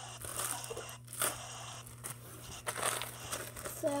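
Clear plastic zip-top bag crinkling and rustling irregularly in the hands as the foam squishy toy sealed inside it is squeezed and handled.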